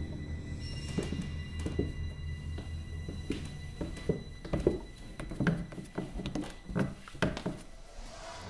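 Footsteps coming down a staircase: an uneven run of knocks and thuds, under low droning horror-film music that thins out about halfway through.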